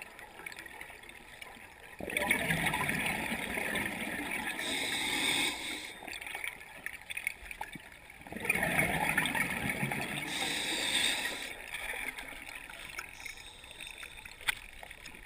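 Scuba regulator exhaust bubbles underwater: two long, gurgling rushes of exhaled bubbles, one starting about two seconds in and one about eight seconds in, each lasting a few seconds, with quieter pauses between breaths.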